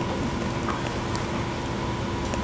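Steady room noise in a lecture hall: an even hiss with a faint steady hum and a few faint ticks, no voices.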